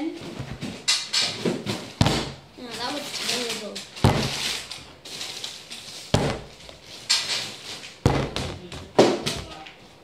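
Plastic 2-litre bottle, part-filled with liquid, thudding down onto a wooden table again and again as it is flipped: several sharp knocks roughly every one to two seconds, with indistinct voices between them.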